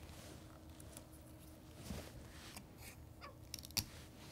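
Faint handling sounds of heat tape being laid down by hand on a hardboard blank and its transfer paper: light rustles and a few small clicks, the sharpest a little before the end.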